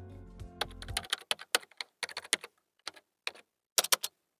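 Computer keyboard typing: a quick, irregular run of key clicks. Background music fades out in the first second as the typing begins.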